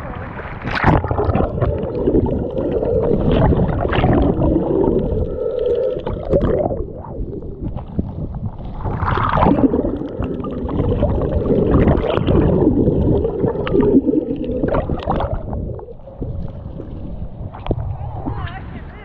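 Choppy seawater sloshing and gurgling around a waterproof action camera as a swimmer strokes against the current, the camera dipping under the surface, so the sound is muffled. Louder splashes come every few seconds.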